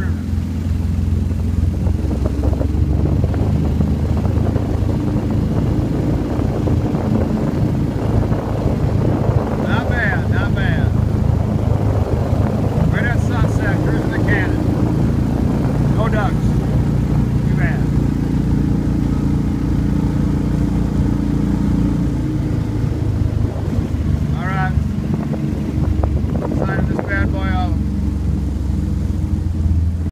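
Motor of a small flat-bottomed river boat running steadily under way, a loud continuous drone.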